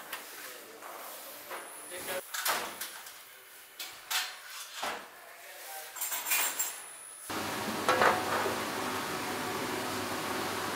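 Scattered light knocks and clinks of metal kitchenware, then about seven seconds in a steady room hum starts suddenly, with a brief clatter soon after.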